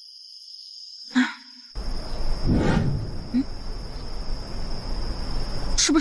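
Crickets chirring in a steady high-pitched drone. A brief sharp knock comes about a second in, and a louder rustling noise comes about two and a half seconds in.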